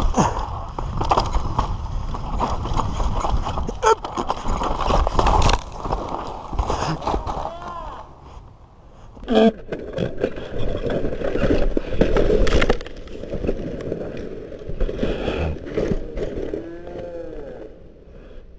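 Trek Session 9.9 downhill mountain bike ridden fast down a dirt trail: a steady rush of tyres on loose dirt with the bike rattling and knocking over bumps. There is a short lull about eight seconds in, and the noise fades near the end.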